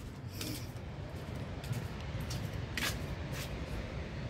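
Footsteps on a concrete walkway, a few faint soft clicks, over a low steady background rumble.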